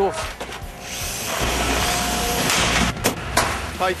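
A power tool running steadily for about two seconds as a computer is opened up, followed by two sharp knocks near the end.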